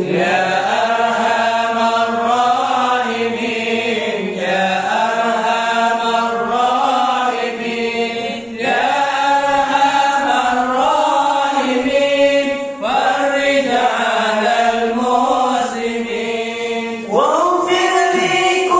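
A group of men chanting an Islamic devotional song together, with the lead voices sung close into microphones and amplified. The melody goes in phrases of about four seconds, each separated by a short breath.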